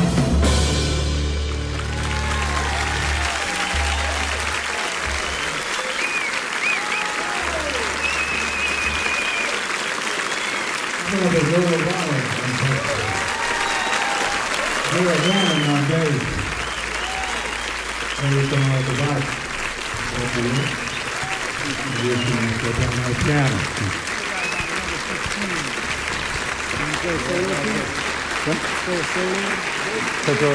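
Concert audience applauding at the end of a jazz number, steady through the whole stretch, as the band's last low notes fade out in the first few seconds.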